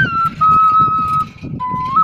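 Quena, an Andean end-blown cane flute, playing a melody: a high held note slips down to a lower one that is held for about a second, breaks off, and a lower note starts shortly before the end. A low rumbling noise runs underneath.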